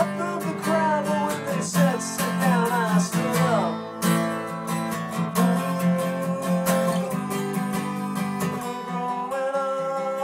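Acoustic guitar strummed in steady chords, an instrumental passage between verses; the low notes drop out about nine seconds in.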